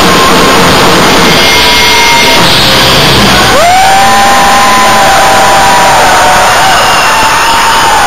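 Loud live band music with a crowd cheering over it. About three and a half seconds in, a single note slides up and is held for several seconds.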